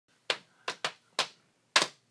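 Hands striking: about five sharp slaps at an uneven beat, each dying away quickly.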